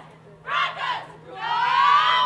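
Women's team shouting together in a huddle: a short two-part shout, then a long, rising group yell starting about a second and a half in.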